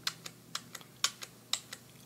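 Computer keyboard keys clicking: several separate short taps spread over two seconds, from repeated Ctrl+Z presses undoing edits in the drawing software.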